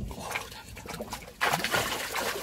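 A hooked fish thrashing against a taut line on a long fishing pole, churning and splashing the water surface, with a sudden loud splash about one and a half seconds in.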